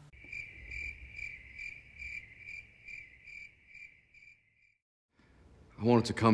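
Cricket chirping: a steady high trill pulsing a little over twice a second, fading away about four and a half seconds in.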